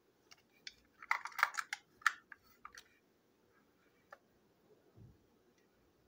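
Small plastic toy trains handled in the hands: a flurry of light clicks and rustles, then a single click a little later.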